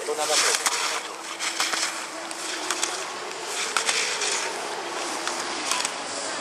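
Indistinct voice, likely the race's public-address announcer, heard over a steady outdoor hiss, with many scattered sharp clicks.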